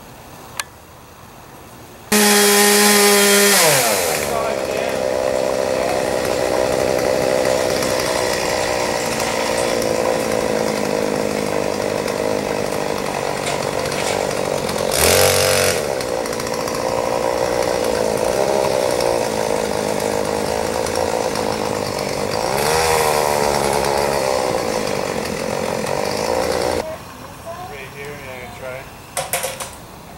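Gas chainsaw coming in suddenly and loudly about two seconds in, settling into a steady run as it cuts branches up in a tree, revving up briefly twice and shutting off a few seconds before the end.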